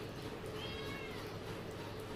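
A cat meowing faintly once, a short arching call about half a second in, over a steady low room hum.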